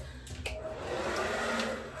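Hot Tools hair dryer running, a steady rush of air that swells about half a second in and eases slightly near the end.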